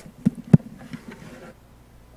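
Two dull thumps in quick succession, the second louder, picked up by the pulpit microphone as things are handled at the pulpit, then quiet room tone.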